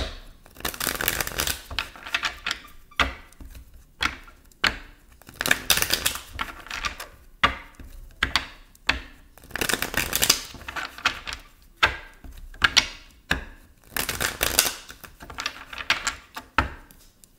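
A deck of tarot cards being shuffled by hand, in several bursts of quick clattering card noise with single card clicks between them.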